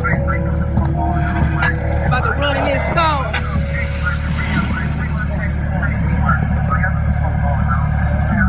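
Polaris Slingshot's engine idling with a steady low drone, with a voice talking and music playing over it.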